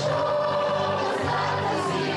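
A large children's choir of over four hundred voices singing together, holding long notes and moving to new ones.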